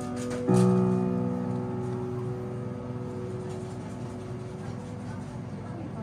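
Yamaha grand piano: a chord struck about half a second in, the tail of the chord before it still ringing, then left to ring and die away slowly with no further notes, as at the end of a piece.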